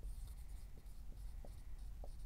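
Dry-erase marker writing a word on a whiteboard: faint scratching and squeaking of the pen strokes.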